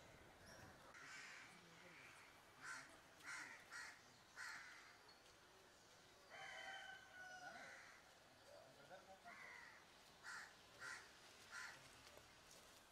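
Faint bird calls over near-silent outdoor ambience: a quick series of short calls a few seconds in and another near the end.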